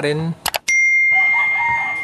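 Two quick mouse clicks, then a single bell ding that rings on and slowly fades: the sound effect of a subscribe-button animation.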